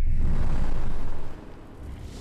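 Sound effect for an animated logo: a loud rushing blast of noise with a deep rumble, like a gust of smoke, that drops off sharply about a second in and is followed by a softer whoosh.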